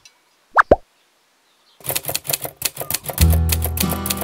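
Two quick pitched 'plop' sound effects about half a second in, then background music starting just under two seconds in: strummed acoustic guitar, with a bass line joining about a second later.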